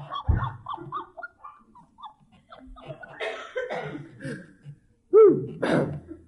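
Audience laughter dying away into scattered chuckles, with a loud cough near the end.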